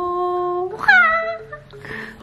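A woman's long, drawn-out excited vocal cry, held almost on one pitch and sagging slightly. About a second in comes a second, shorter cry that starts high and slides down.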